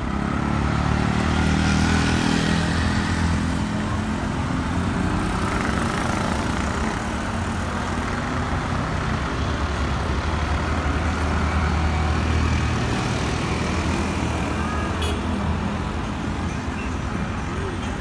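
Motor vehicle engine running with road and traffic noise, steady throughout, the engine note rising over the first few seconds.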